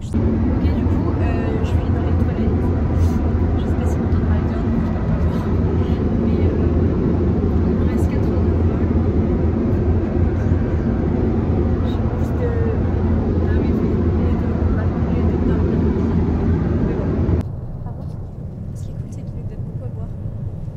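Airliner cabin noise in flight: a loud, steady low rumble of engines and rushing air, which cuts off suddenly about 17 seconds in, leaving quieter cabin noise.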